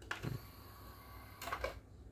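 Victor XL-V313 CD player's disc tray closing under its motor: a click, a low thump, a faint steady motor whine, then a short rattle about one and a half seconds in as the tray shuts on the disc.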